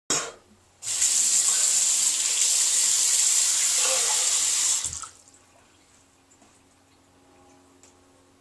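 Bathroom sink tap running: a short spurt at the start, then a steady flow of water for about four seconds before it is shut off.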